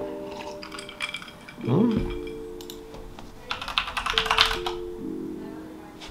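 Background music of held, sustained chords, with a quick run of computer keyboard typing about halfway through.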